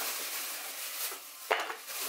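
Plastic freezer bag holding frozen banana slices rustling and crinkling as it is handled, with one sharp click about one and a half seconds in.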